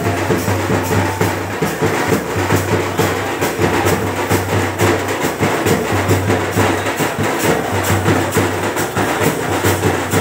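Loud, fast drum and percussion music with a dense, driving beat of sharp strokes, the kind of drumming that accompanies a lathi khela stick-fighting display.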